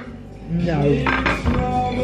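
Cutlery clinking on plates, with one sharp clink at the start. From about half a second in, music and a voice come in over it.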